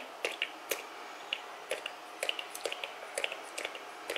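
Pump spray bottle of Lindy's Stamp Gang Sidewalk Chalk spray pressed slowly, so it sputters instead of spraying evenly: a string of quiet, irregular clicks and spits as the liquid splats onto cardstock.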